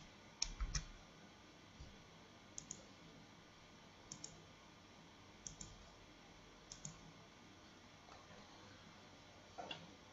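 Faint computer mouse clicks, most as quick double ticks, spaced a second or more apart, with a near-silent room between them.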